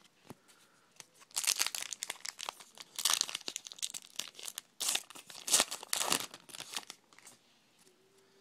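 Plastic trading-card pack wrapper being torn and crumpled by hand, crinkling in three long spells with short breaks between them.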